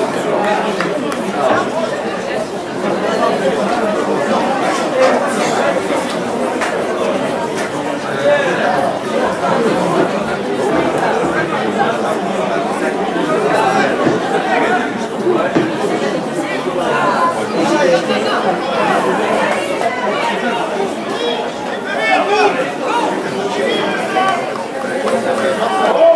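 Steady chatter of many voices talking at once from spectators, with no single voice or words standing out.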